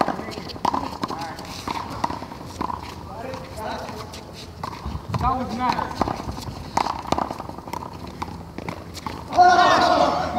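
A fast one-wall handball rally: irregular sharp smacks of the ball off hands and the concrete wall, with sneakers scuffing the court and players' shouts. Near the end a loud, drawn-out yell rings out as the point ends.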